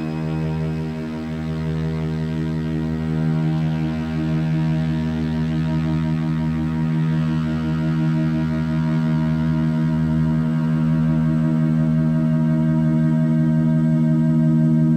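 Electroacoustic music: a sustained electronic drone of steady stacked tones, with a low layer underneath that drops out briefly several times, slowly growing louder.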